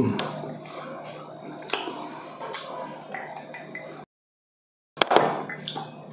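Close-miked eating and drinking sounds from a meal of beef soup, with two sharp tableware clinks about two and two and a half seconds in. The sound cuts out completely for about a second shortly after the middle.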